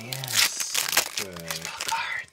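Foil wrapper of a 2022 Donruss baseball card pack being torn open and crinkled, in a burst of crackling through the first second. A short stretch of a man's voice follows.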